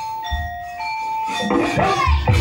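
Javanese gamelan accompaniment: a short melody of steady held notes stepping down and back up, with a low drum beat about a third of a second in.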